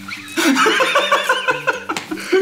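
Several men laughing hard together, the laughter breaking out about half a second in and going on in quick pulses.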